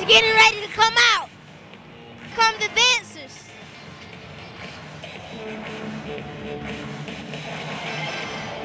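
A quick run of short, high squeaks, each sliding up and back down in pitch, in two bursts in the first three seconds; then faint arena music over the hall's background noise.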